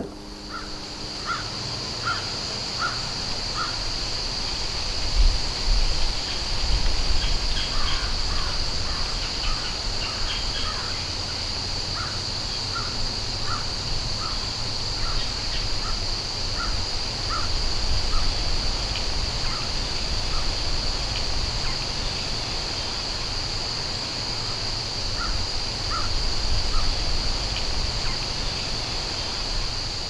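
Steady, high-pitched chorus of evening insects, with a bird calling over it in short runs of three or four notes about two-thirds of a second apart, repeated several times.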